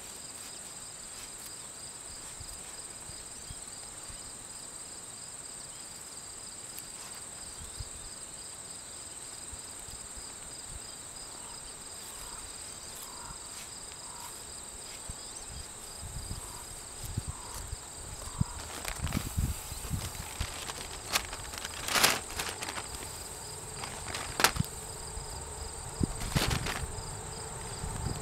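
Steady high-pitched chirring of insects, one voice pulsing rapidly. From about halfway in, hands scrape and rustle through loose soil and straw mulch while digging potatoes, with a few sharp clicks.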